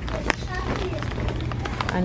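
Convenience-store background: a steady low hum with faint voices and a few sharp clicks and knocks from handling and footsteps.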